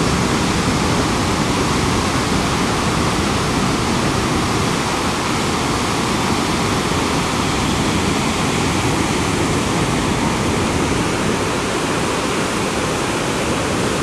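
Niagara Falls: the rapids of the Niagara River and the American Falls, a steady, unbroken rush of falling and churning water.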